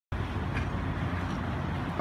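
Steady outdoor background noise with a low rumble and a hiss on top.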